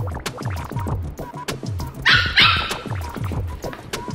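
Two barks from a Lhasa apso, short and close together about halfway through and louder than everything else, over background music with a steady beat.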